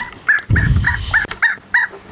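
Fingerlings interactive baby monkey toy chirping through its small speaker: a quick run of about seven short, high squeaks, evenly spaced at about five a second, with some handling rumble underneath.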